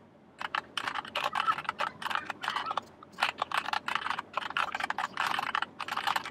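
Typing on a computer keyboard: a quick, uneven run of key clicks, with a brief pause about halfway through.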